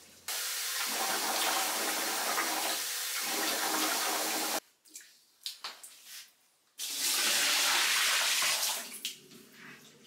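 Water being poured out of a plastic basin and splashing, in two long runs: the first stops abruptly about four and a half seconds in, the second fades out near the end. A few light knocks come between them.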